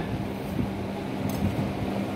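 Steady low machine hum, with a few faint clicks as the handwheel drives the chisel mortiser's carriage along its toothed rack.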